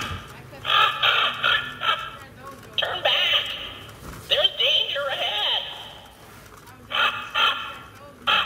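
Home Accents Holiday 12.5-inch animated talking raven prop speaking through its small built-in speaker: a tinny recorded voice in about six short bursts with pauses between them.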